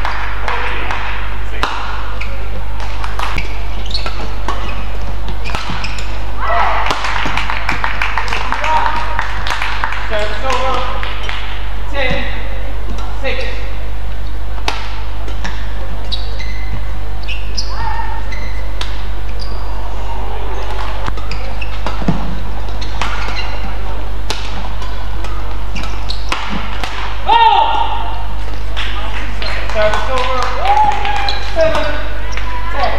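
Badminton rally on an indoor court: repeated sharp strikes of rackets on the shuttlecock and short squeaks of players' shoes on the court mat, over a steady background of voices in the hall.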